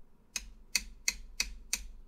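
Typing: five slow, evenly spaced key clicks, about three a second.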